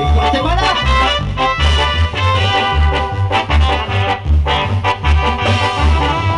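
A live band playing Latin dance music through loudspeakers, with a steady pulsing bass line under the melody.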